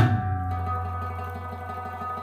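Afghan rabab strings left ringing after the last of a run of strokes on the rabab and mangay pot drum, the notes and sympathetic strings slowly dying away with a steady low tone beneath.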